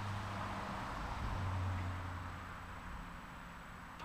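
Steady low rumble and hiss of outdoor background noise, a little louder between one and two seconds in.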